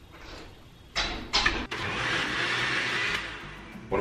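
Countertop blender blending a protein shake. It starts about a second in with two short bursts, then runs steadily and winds down just before the end.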